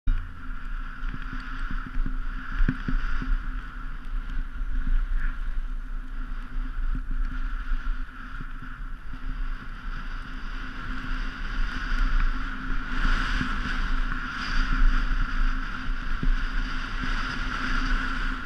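Skis sliding over packed snow, with wind buffeting the camera's microphone: a steady rushing, rumbling noise that swells and eases with speed, loudest a little past the middle.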